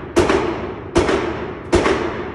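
Three pistol shots, a little under a second apart, each one sharp and followed by an echoing tail.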